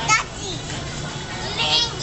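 Young children's voices: two short high-pitched utterances, one right at the start and one about one and a half seconds in, over a steady background hum.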